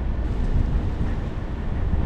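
Steady low rumble of tyre and road noise from a car driving on a rough, cracked concrete street.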